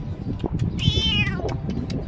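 A domestic cat meowing once: a single high call of well under a second, falling in pitch at the end.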